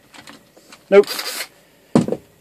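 A cordless drill put down on a workbench, landing with one sharp knock near the end, after some faint handling clicks.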